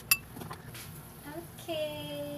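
Stainless steel pot lid lifted off the pot with one sharp metallic clink that rings briefly. Near the end, a short steady held tone that sounds like a voice.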